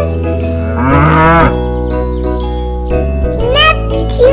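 A cow mooing once, about a second in, with the pitch bending up and then down, over children's background music with a steady bass line. Near the end there is a short rising whistle-like glide.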